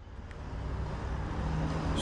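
Diesel truck engine idling steadily, fading in.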